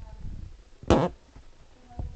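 A person coughs once, sharply, about a second in, after a low rumble.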